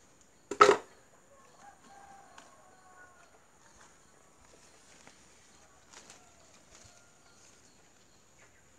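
A single sharp snap about half a second in, loud and brief. Then faint, drawn-out pitched animal calls in the background, twice.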